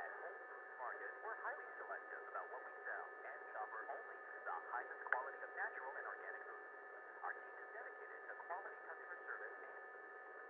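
A telephone call on hold during a transfer, heard down the phone line. The sound is faint and thin, with a steady hum of tones and brief muffled, voice-like fragments a few times a second.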